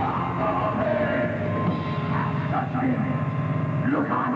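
Heavy metal band playing live: harsh, growled vocals over a dense wall of distorted guitar and drums.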